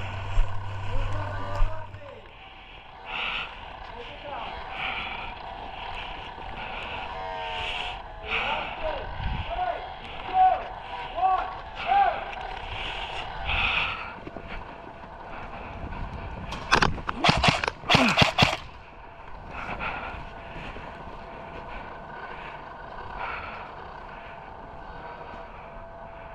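Footsteps of a person walking over grass at about one step a second, with faint voices. A quick cluster of sharp cracks comes about two-thirds of the way through.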